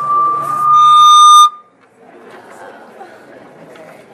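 Sound-system feedback squeal: a single high tone swells until it is very loud and harsh, then cuts off abruptly about a second and a half in. After it, the low murmur of a hall full of people.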